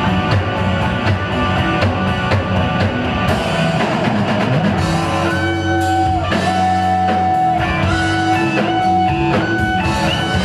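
Live band playing a slow blues: electric guitar lead over bass guitar and drums. About halfway through, the guitar moves to long held, bent notes that slide up and down in pitch.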